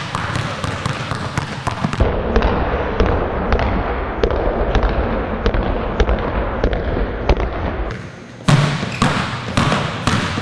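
Two basketballs dribbled on a hardwood gym floor, about three bounces a second in a steady rhythm. The sound changes abruptly about two seconds in and again near the end, and a low steady hum lies under the middle stretch.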